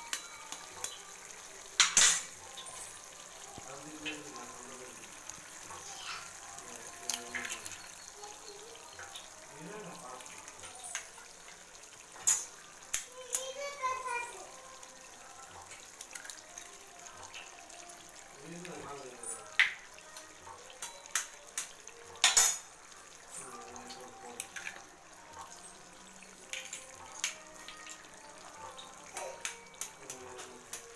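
Mutton frying in an aluminium kadai with a low steady sizzle, a metal fork scraping and clinking against the pan, and sharp taps scattered throughout as eggs are cracked into the pan.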